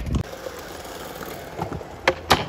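Extra-wide skateboard's wheels rolling over smooth concrete: a dull thud at the very start, then a steady rolling rumble as the board heads for the rail.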